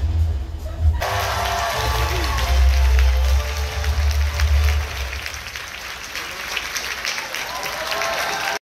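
Audience applauding and cheering over loud background music with a heavy bass. The clapping swells in about a second in, mixed with crowd voices.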